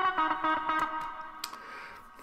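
A sampled funk guitar chord played back through heavy reverb. The sustained, washed-out chord rings on and fades away over the second half.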